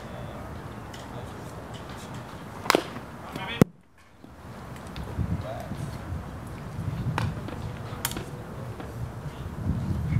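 Baseball field ambience with faint distant voices. There is a sharp knock a little under three seconds in and another just before four seconds, a brief drop to near silence, and two fainter clicks later on.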